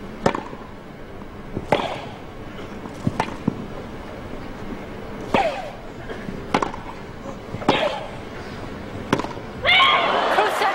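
Tennis ball struck back and forth in a rally on a grass court: about seven sharp racket hits, one roughly every second and a half, some with a short grunt from the player. Near the end the crowd bursts into cheering and applause as the point is won.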